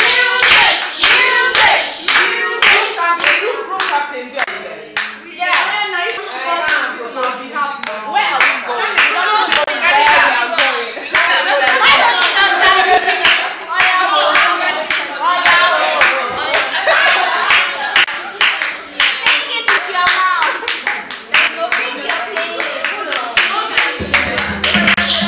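A group of women clapping their hands in a steady rhythm, about two to three claps a second, with many voices singing and calling out over the claps.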